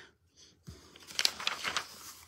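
A page of a large paper picture book being turned: a short papery rustle and crackle lasting just under a second, starting about a second in.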